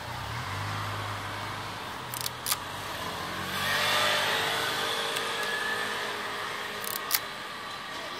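A car engine running at low revs, then the car passing close by: its sound swells to a peak about halfway through and fades away. A few sharp clicks come in between.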